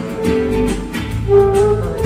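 Live band music: guitars over a bass line and a beat. A held higher melody note stands out in the second half.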